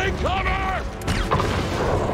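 Film sound effects for the Transformers robot Bumblebee: mechanical whirring glides and ratcheting clicks, a man's shout near the start, and a rushing blast building near the end.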